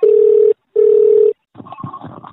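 Telephone ringback tone on an outgoing call: two steady beeps of about half a second each with a short gap, the double-ring cadence of the line ringing at the other end. About a second and a half in the call connects and a crackly open phone line follows.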